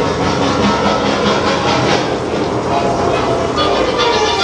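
Dark-ride soundtrack: a steady rumbling rush of sound effects mixed with music, with no pauses.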